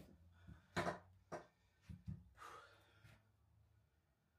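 Near silence, broken by a few faint clicks in the first two seconds and a soft breath about two and a half seconds in.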